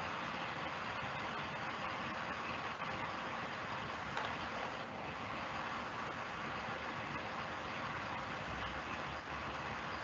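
Steady background noise through an open microphone during a pause in talk: an even hiss with a faint steady hum.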